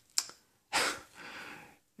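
A person's mouth click, then a breath drawn in through the mouth and a softer breath, in a pause between words.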